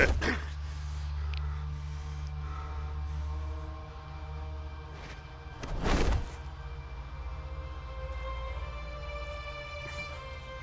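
Dark, tense film score with a steady low drone. A short loud rush of noise swells and fades about six seconds in, and held string tones build over the last few seconds.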